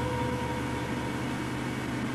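Steady low mechanical hum under an even hiss, with a faint high tone that fades out just after the start.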